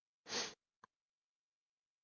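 A single short sniff from a man close to a headset microphone, about a quarter second long, followed by a faint click.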